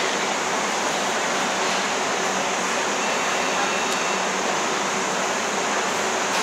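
Steady, even rushing room noise of a large warehouse-store food court, like air-conditioning hiss, with no distinct events.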